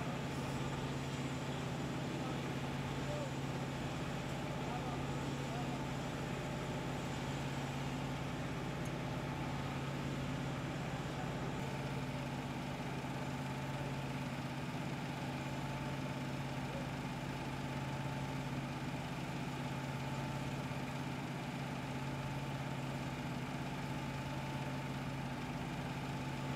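Steady engine hum from idling machinery on an airport apron, a constant low drone with a few fixed tones that does not change.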